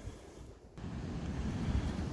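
Wind blowing across the microphone: a low, steady rush that dips briefly about half a second in.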